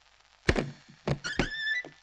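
A wooden door being unlatched and pulled open: three thuds from the latch and door, with a short high squeak after the last one.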